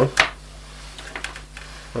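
A few faint small clicks from multimeter test leads and probes being handled and repositioned, over a faint steady low hum.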